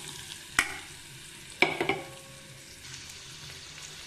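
Chopped onions sizzling steadily in hot ghee in a steel kadai. Two sharp knocks come about half a second and a second and a half in; the second is louder and rings briefly.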